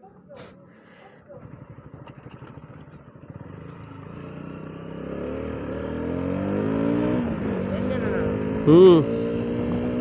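KTM 125 Duke's single-cylinder engine pulling away and accelerating, quiet at first, then growing louder with its pitch rising, falling back once about seven seconds in and rising again. A short loud vocal sound cuts in near the end.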